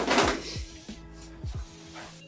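Background music with steady tones and a few falling bass notes. In the first half second there is a brief rustling slide as a flat wireless charging mat is pulled out of the cardboard shoe-box lid.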